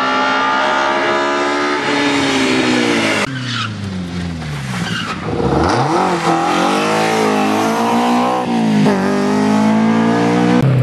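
Rally car engines at full throttle on a tarmac stage, the pitch falling as the car brakes for a corner and climbing again through the gears, with a sudden cut to another car about three seconds in. A deep drop and climb in pitch near the middle as the car lifts and powers out of a bend.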